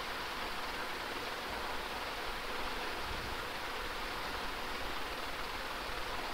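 Steady background hiss with no other sound: the recording's own noise floor, even throughout.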